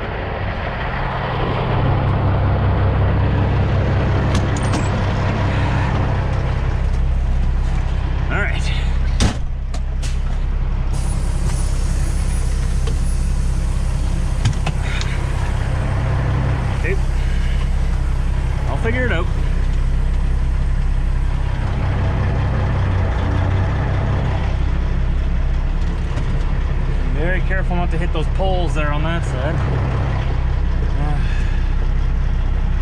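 Semi truck's diesel engine running steadily at low speed while the rig is maneuvered backward, with a sharp knock about nine seconds in and a few brief squeals later on.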